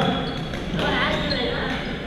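Sports-hall badminton play: voices echoing in the hall, with sneakers squeaking on the court floor and light knocks of play.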